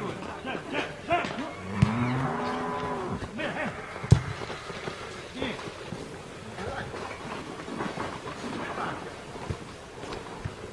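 A cow mooing once, a long low call of over a second starting about two seconds in. Sharp knocks of a football being kicked, the loudest about four seconds in.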